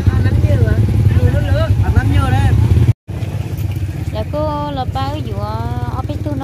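People talking over the steady low rumble of an idling engine. The sound cuts out briefly about halfway through.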